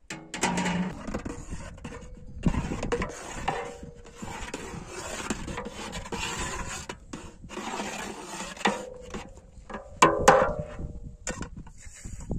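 Metal spoon scraping and stirring around the inside of a metal pot of whey boiled down to a thick qareh qurut paste, in repeated long strokes with short breaks between them. A few sharp metal clinks come about ten seconds in.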